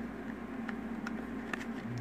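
Quiet room tone with a steady low hum and two faint small ticks about a second apart, from fingers handling a small nylon spacer.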